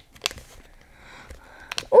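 Faint rustling and a few light clicks of a plastic toy cup with a clear film lid being handled as the child gets ready to peel it open.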